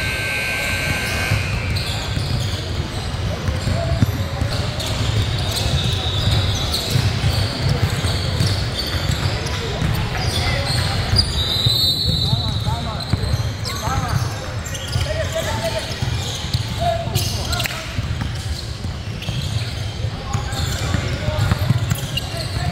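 Basketball being dribbled and bounced on a hardwood gym floor, short sharp thuds scattered throughout, over indistinct chatter and the steady hum of a large gym.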